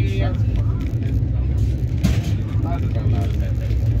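Passenger train running, heard from inside the coach: a steady low rumble of wheels on rails, with a single sharp clack about two seconds in as a wheel crosses a rail joint.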